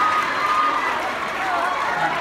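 Audience laughter and chatter from a large crowd, easing off gradually.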